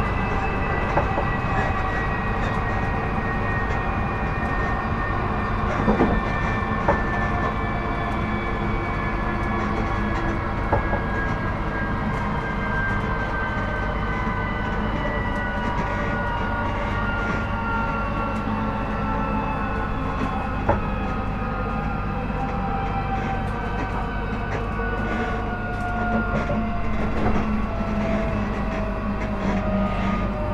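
Class 458/5 electric multiple unit heard from inside a motor carriage. The whine of its traction motors falls steadily in pitch over the running rumble as the train slows, with a few sharp knocks from the wheels over the track.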